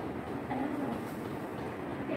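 Steady low background noise of a classroom, with faint voices.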